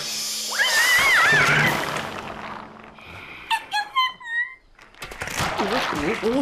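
Cartoon sound effects: a clattering crash, then a squirrel's high, wavering squeaks and chatter, heard twice. About five seconds in comes a second crash as someone slips on spilled fruit, followed by a man's yell.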